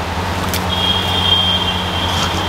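Steady low hum and even rush of the burner flame under a handi of onions and bay leaves frying in oil. A thin, steady high whistle joins about a second in.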